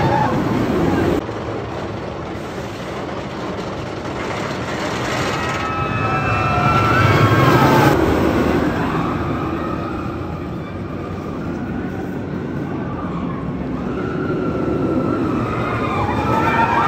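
Steel Vengeance roller coaster train running over its steel track on the wooden support structure, a continuous rumble that swells to its loudest about halfway through and then eases off. Wavering high cries from the riders rise and fall over it in the middle.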